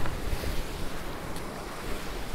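Big whitewater river rapid rushing: a steady, dense noise of churning water.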